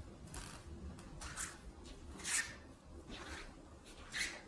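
A person exercising, with short swishing sounds about once a second. The loudest comes a little past two seconds.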